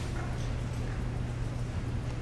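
Steady low electrical or ventilation hum: room tone in a large hall, with a couple of faint soft ticks.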